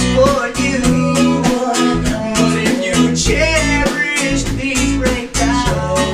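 A pop-rock song on strummed acoustic guitar and electric bass with a steady beat, with voices singing at times.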